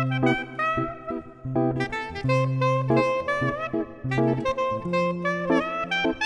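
Soprano saxophone playing an improvised melody, notes bending and wavering in pitch, over a backing accompaniment of held low notes that change about once a second.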